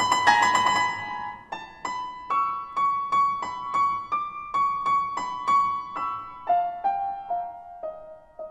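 Solo grand piano: a loud cluster of high notes rings at the start, then a line of single high notes is struck about twice a second, stepping down in pitch near the end.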